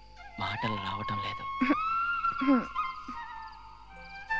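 Film background music with long held notes, with short wordless vocal sounds sliding in pitch over it during the first few seconds.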